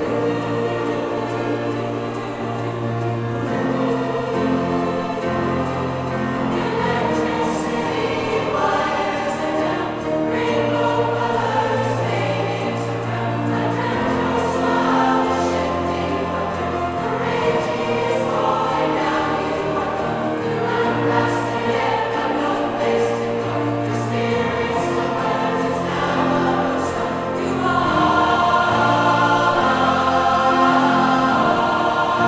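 Large mixed choir singing in full, layered harmony, with low notes held for a few seconds at a time under moving upper parts. The sound swells louder near the end.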